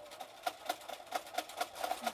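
Electric sewing machine stitching slowly through thick layers of cotton and flannel, an even ticking of about four to five needle strokes a second over the motor's steady hum.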